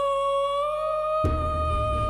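Female singer holding one long, high wordless note that rises slightly in pitch. Low instrumental backing comes in just past halfway.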